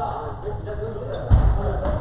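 Table tennis ball clicking off paddles and tables during rallies, over voices talking, with one heavy low thump about two-thirds of the way through.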